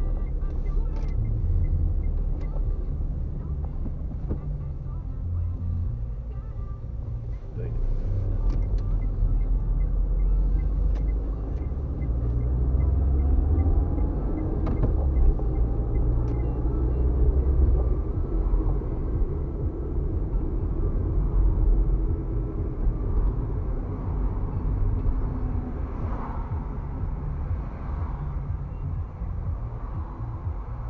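Cabin sound of a car driving in city traffic: a low engine and road-noise rumble that rises and falls with speed.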